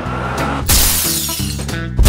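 Music with a drum beat, overlaid with a glass-shattering sound effect about two-thirds of a second in that fades away over about a second. A louder crash begins at the very end.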